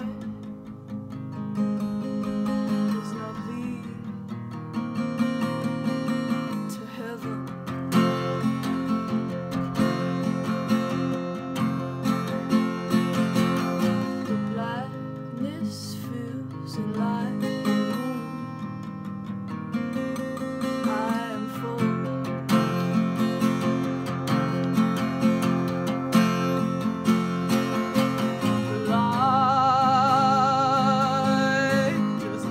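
Fender acoustic guitar playing a steady, repeating chord pattern. Near the end a woman's voice comes in singing with vibrato.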